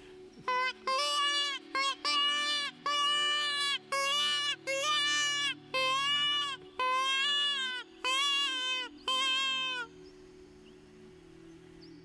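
Weisskirchen Super Hasenklage, a wooden mouth-blown hare distress call, blown in a series of about ten high-pitched wailing cries, each half a second to a second long with a slight fall at the end. It imitates the squeal of a hare in distress, used to lure foxes.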